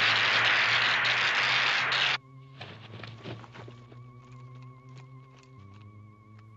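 Loud electric crackling of the force-field fence, cutting off abruptly about two seconds in. After that a quieter, wavering electronic tone hangs on with faint clicks.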